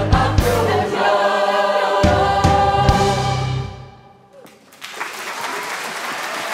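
Pop choir with piano, bass and drums singing the last bars of a song. It ends on a held chord punctuated by a couple of drum hits that dies away about four seconds in, and audience applause starts about a second later.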